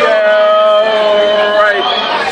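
People singing in long, held notes that step from one pitch to the next, over the chatter of a crowded room.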